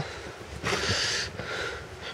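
A person drawing one short breath, an airy noise lasting under a second around the middle.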